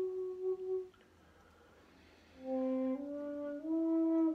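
Two shakuhachi bamboo flutes playing long held notes. The notes stop about a second in, and after a pause of about a second and a half new notes begin lower and step upward twice.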